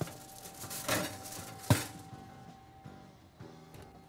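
Oven door shut with a single sharp clunk a little under two seconds in, after a short scraping sound of a baking dish going into the oven; faint background music underneath.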